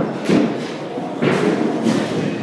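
Thuds of baseball batting practice in an indoor cage: a bat striking pitched balls and the balls hitting the netting, with sharp impacts at the start and again just over a second in.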